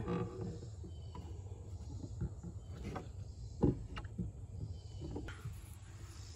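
Faint handling noise of a cabin air filter being handled at the plastic filter housing: a few light clicks and one sharper knock about three and a half seconds in, over a low steady hum.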